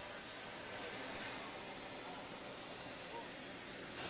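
Faint, steady background hiss with a thin high tone, without words or distinct events.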